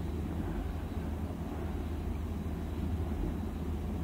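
Room tone on an old cassette recording: a steady low hum with faint hiss, with no distinct event.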